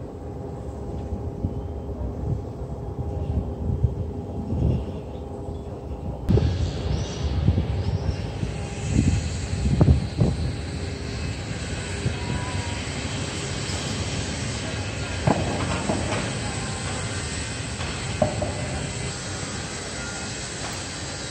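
Steady low rumble of a large vehicle running, with a faint steady hum and irregular low thumps; the sound brightens suddenly about six seconds in.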